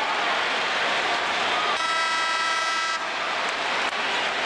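Loud, steady basketball-arena crowd noise, with a single horn blast lasting just over a second, starting about two seconds in.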